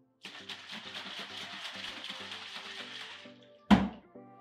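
A plastic bottle of water being shaken hard, with the liquid sloshing and rasping for about three seconds. It ends with one loud knock as the bottle is set down on a wooden table. Background music runs underneath.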